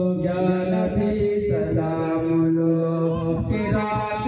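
A group of men chanting a devotional Islamic recitation together, singing long held notes in several overlapping voices.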